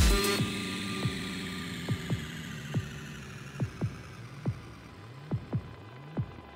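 Electronic dance music in a breakdown over a club sound system: a rising build cuts off just as it begins, leaving a long fading tail and sparse kick drum hits, each dropping quickly in pitch, at uneven intervals. Near the end a low swooping tone comes in.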